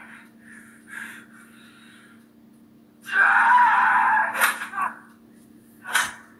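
Film soundtrack heard through laptop speakers: faint speech, then a loud scream about three seconds in that lasts about two seconds, with sharp blows during it and again at the end.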